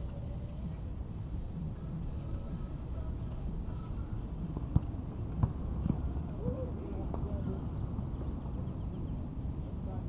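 Players' voices calling out at a distance across a basketball court over a steady low rumble, with two sharp knocks about half a second apart about five seconds in.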